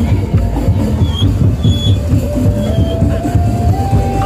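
Madurese daul (tongtong) parade music: drums keep up a busy rhythm under one long held melody note that steps upward in pitch in the second half. Three brief high tones sound over it in the first half.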